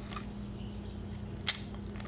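A single sharp click from the mouth about one and a half seconds in, as a hard lemon drop is sucked, over a steady low electrical hum.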